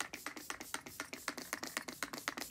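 Makeup setting spray bottle being pumped in a quick run of short spritzes, about seven or eight a second.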